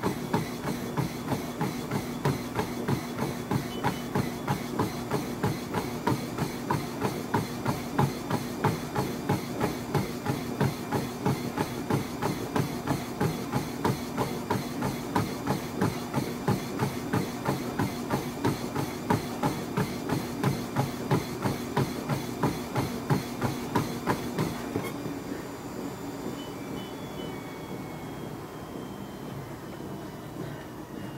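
Running feet pounding a treadmill belt in an all-out sprint, rapid even footfalls over the steady hum of the treadmill motor. The footfalls stop about 25 seconds in, leaving the motor running on its own.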